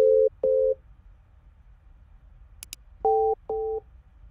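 Telephone keypad tones from a Skype dial pad: a pair of short beeps right at the start, then a mouse click and a second pair of short beeps about three seconds in, at a different pitch. Each beep lasts about a third of a second.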